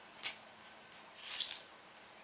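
Brief handling noises: a faint tick early, then a short hissy rustle about a second and a half in.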